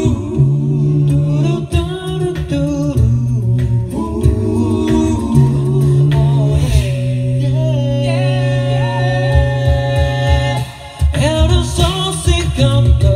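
A cappella vocal group singing live in harmony: held chords over a low sung bass line, with percussive vocal strokes keeping the beat. The sound drops out briefly near the end, then the voices come back in.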